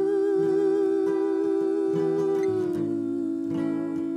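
A woman's voice holding one long wordless sung note with vibrato, stepping down slightly near the end, over acoustic guitar.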